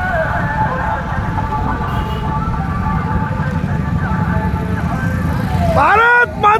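A column of motorcycles riding past with their engines running, a steady low rumble. Near the end a loud shouting voice starts up.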